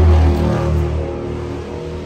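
A motor vehicle passing on the street: a deep, loud rumble that peaks at the start and fades away.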